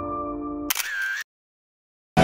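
Soft piano music holding a chord, cut off about three quarters of a second in by a camera shutter sound effect lasting about half a second.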